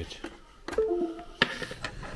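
USB cable being handled and pulled from an external M.2 NVMe SSD enclosure after a safe eject: two sharp clicks, the first followed by a short falling two-note tone.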